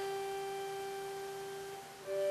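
Chromatic button accordion holding one long, steady note that slowly fades, with the next notes starting right at the end.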